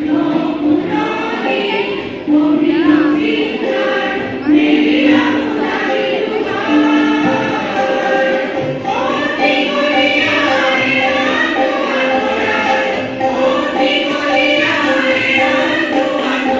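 A large choir, mostly women's voices, singing together with long held notes.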